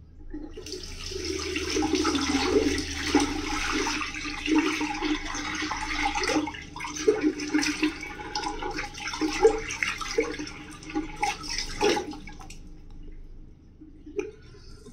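Water running from a tap into a sink, with irregular splashes as shaving lather is rinsed off the face. It starts about half a second in and stops shortly before the end.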